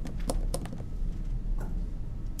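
A few sharp clicks of computer keyboard keys, four close together in the first second and one more near the end, over a low steady hum.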